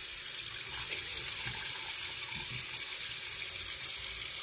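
Tap water running steadily onto a frog's back and into a stainless steel sink, an even splashing hiss.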